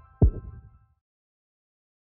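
A single deep boom about a quarter second in, sweeping quickly down in pitch and dying away within about half a second: a sound effect on the orange logo wipe of a news outro. A faint tail of background music ends under it.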